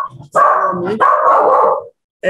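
A dog barking in the room behind a video-call microphone: two long, loud barks in quick succession.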